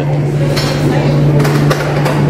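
Busy café counter ambience: background voices and a few short clatters over a steady low hum.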